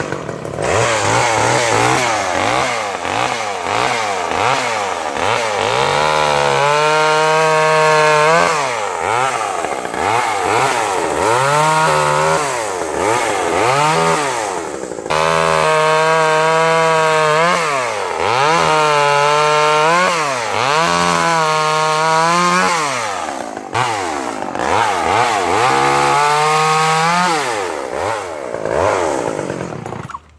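Sears two-stroke chainsaw cutting branches, revved up and held at high revs for a second or two at a time, dropping back toward idle between cuts. The engine sound cuts off at the very end.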